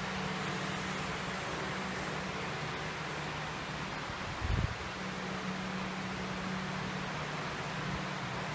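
2003 Cummins ISB 5.9-litre inline-six turbodiesel idling steadily, with a brief low thump about halfway through.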